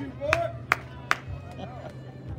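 Three sharp handclaps in a steady rhythm, a little over two a second, stopping just after a second in, with faint voices underneath.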